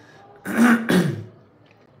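A man clearing his throat in two short bursts about half a second in.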